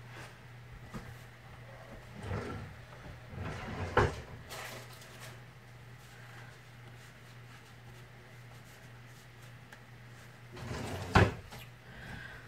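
Kitchen cupboard doors and drawers opening and closing: a few separate knocks, the loudest about four seconds in and another near the end, over a steady low hum.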